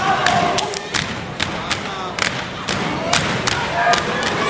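A step team's stomps and hand claps hitting in an uneven, syncopated rhythm, about a dozen sharp strikes in four seconds, with crowd voices and shouts behind.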